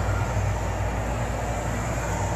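Furrion Chill 15,500 BTU rooftop RV air conditioner running steadily: a constant low hum under an even rush of blower air.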